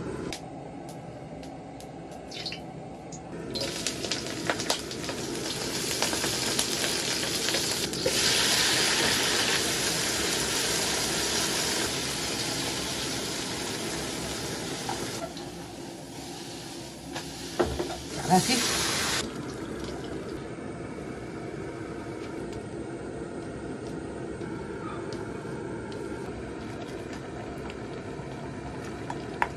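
Tomatoes, garlic sprouts and egg frying in hot oil in a wok: loud sizzling starts a few seconds in and dies down after about ten seconds. A few utensil knocks and a short second burst of sizzling follow, then a quieter steady sound from the pan.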